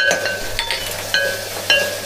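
Metal ladle stirring small onions and tomatoes frying in oil in a metal pot. It clinks against the pot about four times, roughly every half second, with short ringing tones over a light sizzle.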